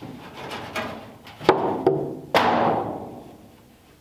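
Plywood seat-back boards being shifted and wedged into place: a few sharp wooden knocks with scraping and rubbing between, the loudest knocks about a second and a half and two and a half seconds in.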